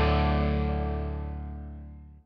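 Closing music: a sustained, distorted electric guitar chord rings out and fades steadily away.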